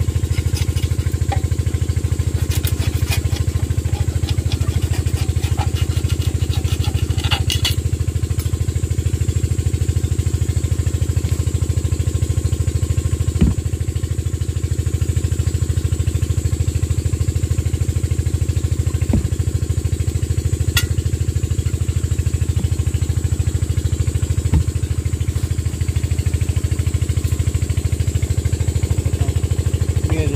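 Kirloskar AV1 5 hp single-cylinder diesel engine running steadily at idle with its rocker cover off, a fast even throb. A few light clicks and knocks sound over it.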